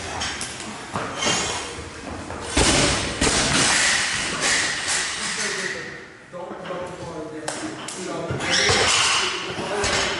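Gym sounds in a large room: people talking, with several heavy thuds of barbells and rubber bumper plates on the floor, the loudest a little under three seconds in.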